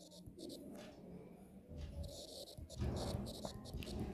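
Faint, irregular scratching of a stylus writing on a tablet, in short strokes as a word is written.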